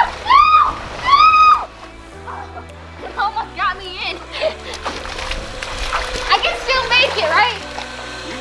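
Water splashing and sloshing on a soapy inflatable slip-and-slide as a person crawls and slides on it, pulled back by a bungee cord. Two loud, high-pitched yelps come in the first second and a half, and background music plays throughout.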